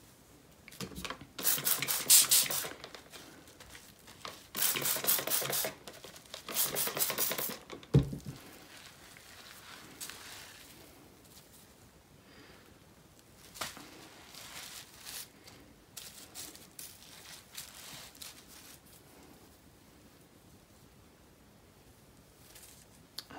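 Bubble wrap crinkling and rustling in three loud bursts as the wet felt piece on its foam template is handled and lifted on it, then a single thump about eight seconds in. After that come fainter rustles and scrapes as yarn is worked onto the felt.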